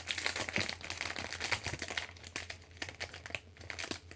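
A gummy candy wrapper being crinkled and handled while someone works to get it open: a run of small crackles, busiest in the first two seconds and then sparser.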